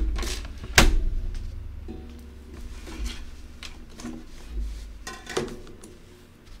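Objects knocked about and set down on a desk while a spill is mopped up. There is a sharp knock at the start and a louder one just under a second in, then lighter knocks and clatter.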